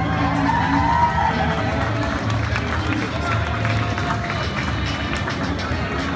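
Crowd of marchers talking among themselves, with music playing in the background and a few held sung or played notes.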